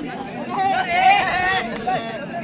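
A voice calling out in a long, drawn-out tone over crowd chatter.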